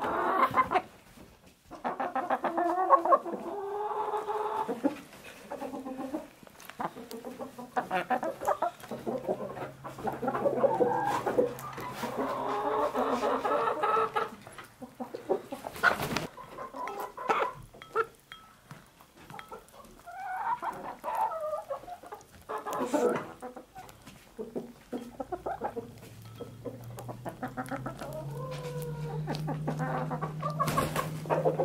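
Several hens clucking as they crowd a bowl and feed, with frequent sharp taps of beaks against the bowl.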